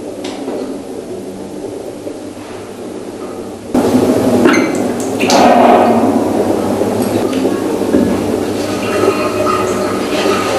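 Bathroom tap turned on about four seconds in, water running from the tap over a toothbrush.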